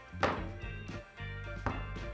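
A glass baking dish full of cake batter knocked down on the table twice, dull thunks that bring air bubbles up out of the batter, over steady background guitar music.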